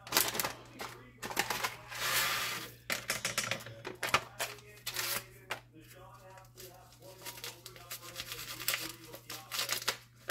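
Crinkly plastic food pouch rustling and crackling as its dry rice-and-seasoning mix is shaken out into a stainless steel saucepan of water, in quick irregular clicks and rustles, busiest in the first few seconds.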